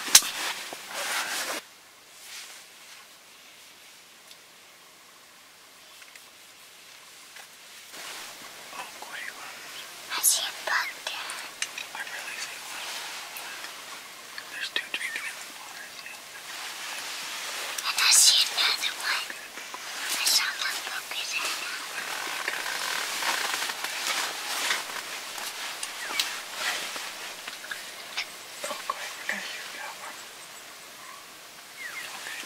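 Hushed whispering between a man and a young boy, low and breathy with no full voice, coming in irregular stretches through the second half. A sharp knock right at the start.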